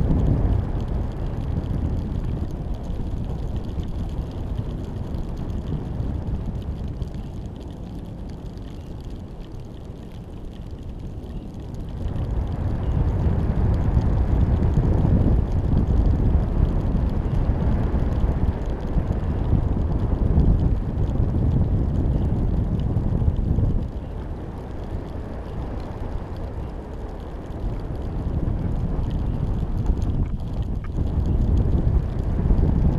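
Wind buffeting the microphone of a GoPro hanging beneath a high-altitude balloon in flight: a low, rough rumble with no tones in it. It weakens for a few seconds, comes back louder about twelve seconds in, and drops again about six seconds before the end.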